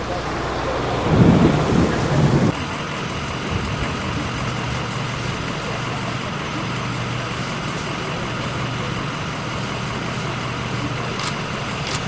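Outdoor background noise with heavy low rumbling for the first two seconds or so. It changes abruptly about two and a half seconds in to a steady hiss with a low hum, with a few faint ticks near the end.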